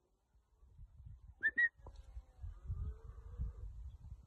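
Two quick whistle blasts, each rising slightly in pitch, from a handler signalling a pointer dog working a field in training. A low, uneven rumble runs underneath after them.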